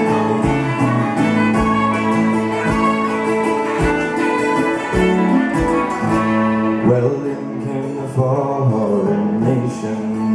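Celtic folk band playing an instrumental break: a fiddle carries the tune over strummed acoustic guitar and a second strummed long-necked string instrument, with a steady beat.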